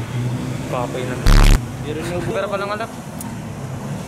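Short wordless vocal sounds from a man, over a steady hum of street traffic, with one brief loud bump of noise a little over a second in.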